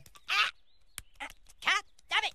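Cartoon characters' voices from a fight scene: three short, high-pitched cries or grunts, with a sharp click about halfway through.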